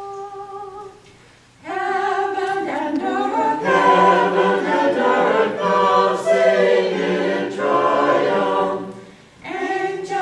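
Small mixed church choir singing a Christmas carol a cappella. A lone note sounds briefly at first, then the full choir comes in about two seconds in, breaks off for a moment near the end, and starts again.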